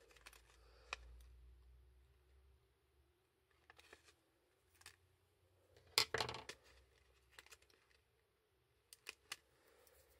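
Faint, scattered clicks and crinkles of a peel-off sticker sheet being handled and picked at with a piercing tool, the loudest crinkle about six seconds in.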